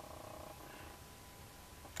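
Faint room tone in a pause between words, with a thin steady high tone running throughout and a brief faint hum in the first half second.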